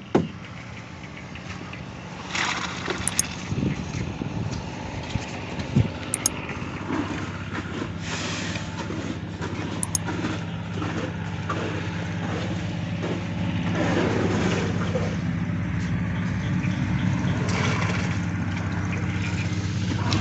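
An engine running steadily, getting louder about eight seconds in, with scattered knocks and scrapes over it.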